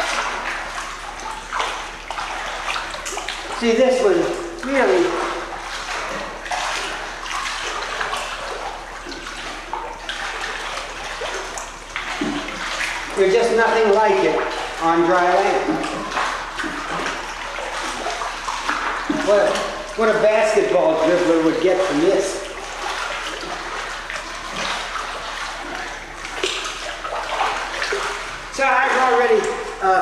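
Pool water splashing and sloshing steadily around a swimmer moving through it. Short bursts of a man's voice with no clear words come over it a few times, loudest around the middle.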